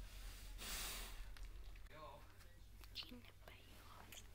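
Newborn puppies nursing, heard faintly: a short breathy snuffle, then a few high, wavering squeaks and whimpers.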